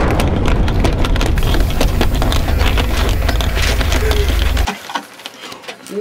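A loud crackling, rumbling blast sound effect meant as a phaser hit on a starship's bridge. It cuts off suddenly about four and a half seconds in.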